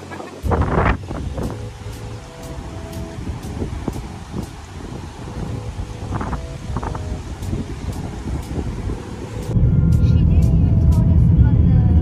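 Wind buffeting the microphone in irregular gusts. About nine and a half seconds in it cuts abruptly to a louder, steady low rumble of engine and road noise heard from inside a moving car.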